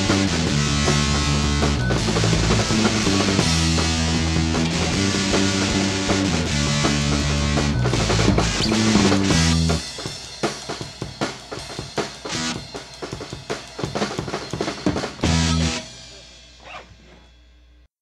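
Rock band of electric guitar, bass guitar and drum kit playing the close of a song. About ten seconds in the guitar and bass drop out and the drums play alone for several seconds, then a final full-band hit rings out and fades to silence near the end.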